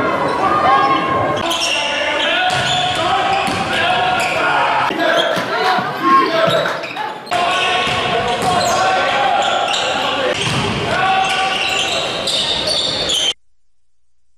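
Basketball game sound in a gym: crowd voices and a ball bouncing on the hardwood court, ringing in a large hall. The sound changes abruptly about seven seconds in and cuts off suddenly near the end.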